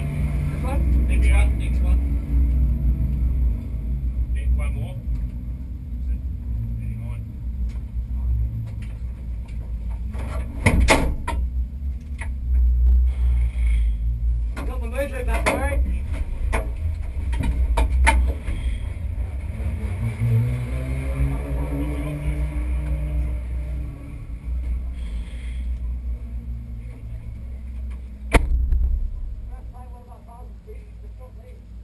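Low, steady engine rumble inside a stationary Porsche GT3 Cup race car's roll-caged cabin, with muffled voices. Sharp knocks come about 11 seconds in and near the end, as the driver climbs out past the roll cage.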